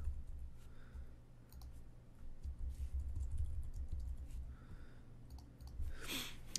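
Faint, irregular clicks of typing on a computer keyboard, over a low steady hum.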